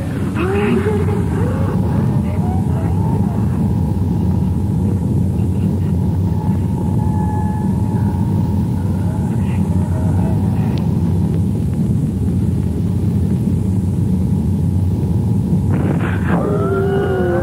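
Dark ambient outro: a steady, heavy low rumble, with faint wavering tones that rise and fall above it now and then.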